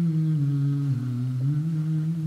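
Wordless humming of a slow melody in long held notes, stepping down in pitch about a second in and back up shortly after.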